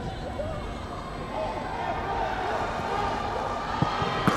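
Football stadium ambience from a thin crowd, with faint distant shouting voices. A single thud near the end is the ball being struck for a shot on goal.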